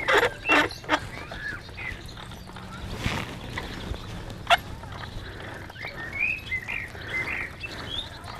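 Birds chirping outdoors, with two sharp knocks about a second and a half apart.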